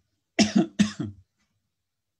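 A person coughing twice in quick succession, starting about half a second in.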